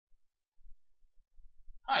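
Near silence with a few faint low bumps, then a man's voice starts speaking right at the end.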